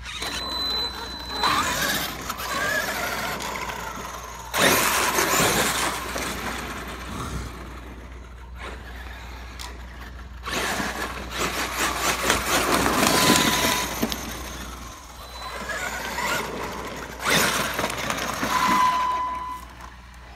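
Traxxas X-Maxx 8S RC monster truck's brushless electric motor whining and its tyres rushing over asphalt in four bursts of driving, run with one tire blown wide open.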